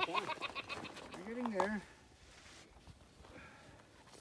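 Human voices only: a burst of laughter tailing off at the start, then one short wordless voiced sound, rising then falling in pitch, about a second and a half in. After that only quiet outdoor background.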